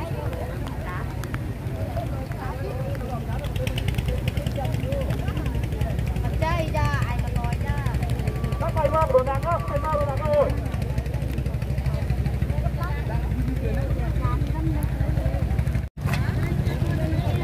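Low, steady wind rumble on the microphone, with the scattered voices of a crowd talking around it; the sound drops out for an instant just before the end.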